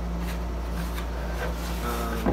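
Steady low hum of background room noise, with a few faint knocks and rubs from a wooden guitar body being handled.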